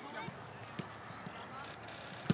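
Footballs being kicked on a training pitch: a few scattered sharp thumps at irregular intervals, with faint voices in the background.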